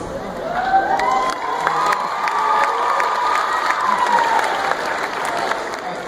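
Audience applauding and cheering at a curtain call, with scattered claps and one long high cheer held for about three and a half seconds before it trails off.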